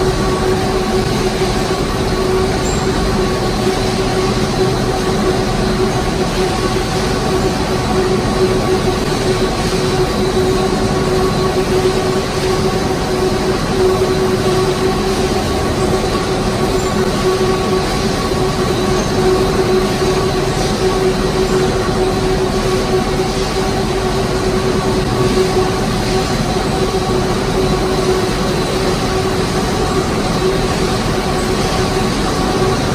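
Industrial octagonal drying and polishing drums for wooden spoons running, a loud, steady machine noise with a constant drone.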